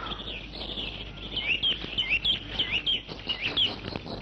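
Small birds chirping: a quick run of short, falling chirps that starts about a second in and stops shortly before the end.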